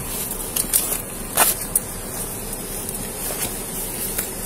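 Handling noise close to a body-worn camera: rustling and a few sharp clicks as objects are picked up and moved, over a steady background hiss.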